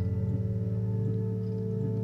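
Experimental drone music: a strummed acoustic guitar chord rings on over a steady held drone tone.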